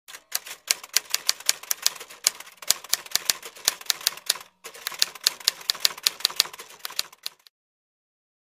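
Typewriter keystrokes as a sound effect: a fast run of sharp key clicks, about six a second, keeping time with text being typed out. There is one short pause partway through, and the clicks stop about a second before the end.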